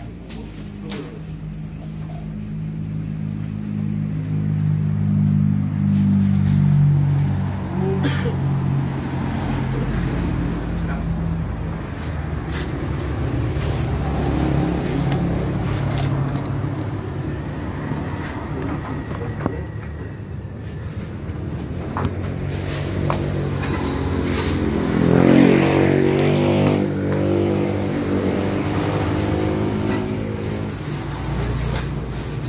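Motor vehicle engine running close by, swelling in level over the first several seconds and then fading. About twenty-five seconds in, an engine note rises in pitch as a vehicle speeds up. Occasional sharp clicks sound throughout.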